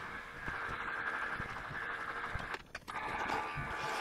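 Precision Matthews PM-1127 metal lathe running with its spindle turning during a thread-cutting spring pass, a steady mechanical hum with a constant whine. The sound briefly drops away for a moment about two and a half seconds in.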